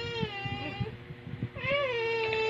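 A baby's long, high-pitched voice held on one steady note, which stops just under a second in. A second long held note begins about a second and a half in, and soft bumps and rustling from handling come in between.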